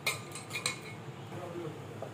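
Light metallic clinks on a stainless steel pot as a dough ball for luchi is lifted out of it: one sharp clink at the start, then two more close together just over half a second in.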